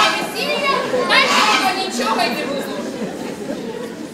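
Actors speaking stage dialogue in a large hall, with no music under it.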